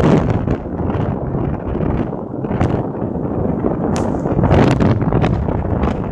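Strong wind buffeting the microphone of a phone filming from a moving motorbike, over a steady low rumble from the ride, surging in repeated gusts.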